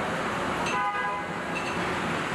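Steady assembly-plant floor noise, with one short horn-like toot less than a second in.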